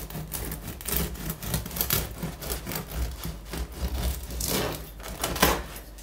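A bread knife sawing through the crisp crust of a freshly baked no-knead loaf on a wooden board: a rapid run of crackles and scrapes, with one louder crack about five and a half seconds in as the cut goes through, then it stops.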